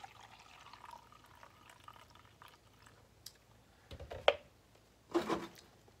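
Ammonia trickling from a plastic gallon jug into a plastic measuring cup, a faint filling sound in the first second or two. About four seconds in comes a single sharp knock, the loudest sound.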